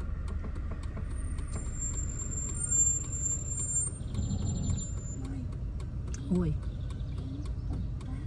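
Car engine running at low speed, heard from inside the cabin as a steady low rumble. A faint high-pitched whine sounds for a few seconds in the first half.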